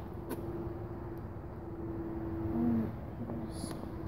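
Faint steady hum at one pitch over low outdoor background noise, fading out near the end, with a short click about a third of a second in.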